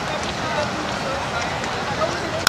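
Spectators chatting: several overlapping voices over a steady outdoor background noise, with no single loud event.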